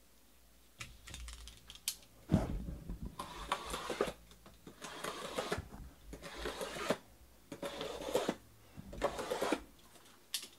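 Cardboard trading-card boxes being handled on a table: a run of rustling, scraping bursts with light knocks, starting about a second in.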